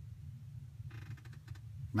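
Faint rustle of paper being handled, about a second in, over a low steady hum.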